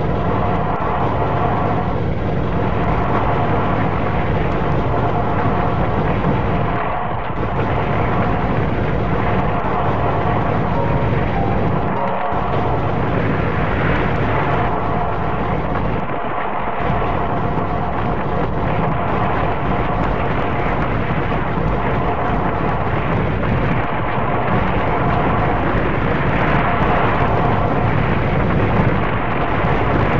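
Industrial noise music: a loud, steady wall of droning noise over a low rumble, with a few held tones running through it. The low end dips briefly about seven, twelve and sixteen seconds in.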